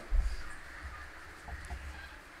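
A pause in a man's speech over a microphone: a short low thump on the microphone at the start, then faint background noise with a couple of soft short sounds about one and a half seconds in.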